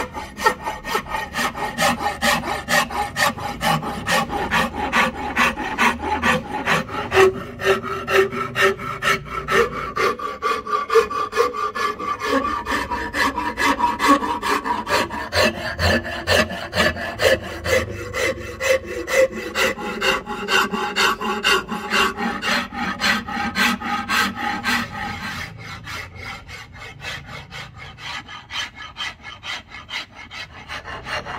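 Steel hand file rasping along a curly redwood axe handle in quick, steady back-and-forth strokes, shaping the handle's curves. The strokes become quieter for the last few seconds.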